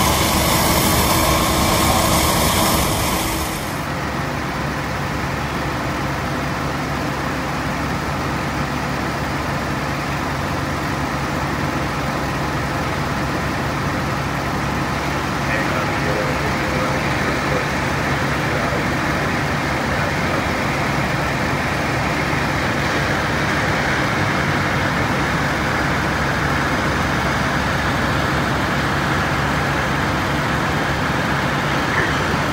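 Fire apparatus engines and pumps running steadily with a low hum, mixed with the rushing of water streams from hoses and an aerial master stream. The sound is louder and brighter for the first few seconds, then drops to a steadier rumble.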